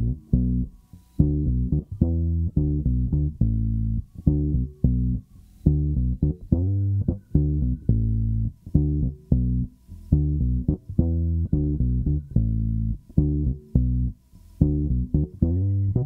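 Isolated bass track of a 1968 Gibson EB-0 electric bass through an Ampeg B-15 flip-top amp, playing a simple soul-funk line of short plucked notes with brief gaps between them. The tone is all bottom end.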